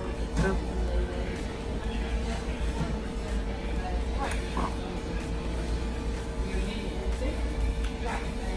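Background music playing over a steady low hum, with scattered voices.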